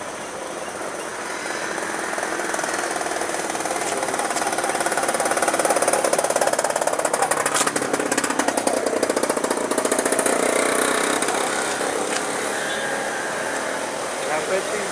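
Passenger train running past: its noise swells over the first few seconds, is loudest in the middle with a fast, even rattling clatter, and fades as the last coaches go by near the end.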